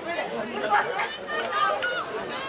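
Several young voices shouting and calling over one another during a rugby tackle and ruck.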